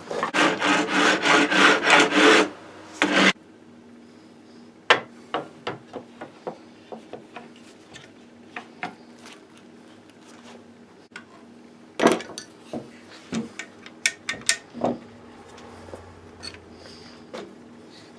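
A hand file worked back and forth in rapid strokes on the rifle's wooden stock for about the first two and a half seconds. Then come scattered light clicks and knocks of rifle parts being handled on the bench.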